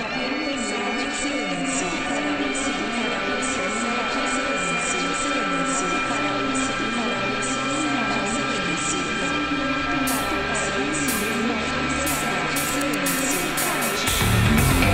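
Electronic music intro: a wavering, sliding synth tone over steady high tones, with a low drone coming in about halfway. Near the end, short bursts of hiss come faster and faster, building toward the heavy section.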